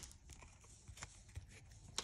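Faint, sparse clicks and light taps of a stack of trading cards being handled in the hand.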